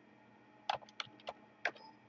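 A few separate keystrokes on a computer keyboard, about five light clicks spaced irregularly through the second half, as a name is typed into a field.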